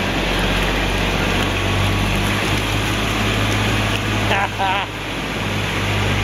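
Kubota 4x4 diesel utility vehicle's engine running at a steady low idle-like speed as it crawls over a cardboard bridge. A person's voice cuts in briefly about four and a half seconds in.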